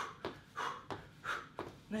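A man doing power-knee drives, breathing hard in short, even pulses of breath about every two-thirds of a second, with light foot thuds on a rubber gym floor between them.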